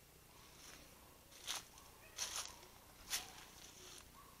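Faint footsteps through dry leaves and grass: three soft crunching steps, a little under a second apart, in the second half.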